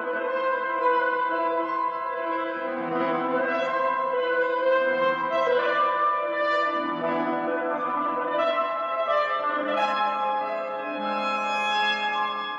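Alto saxophone and piano playing a contemporary classical piece, the saxophone holding long sustained notes that change every second or two over lower piano notes.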